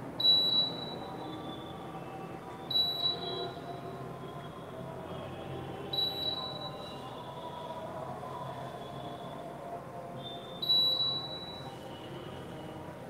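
A high, clear whistling tone sounds four times at uneven intervals of a few seconds, each lasting under a second and starting sharply, over a steady low background hum.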